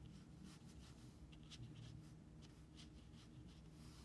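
Faint, short strokes of a watercolor brush on paper, over a low steady hum.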